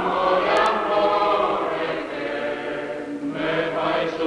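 Film soundtrack music: a choir singing long held notes in several voices together.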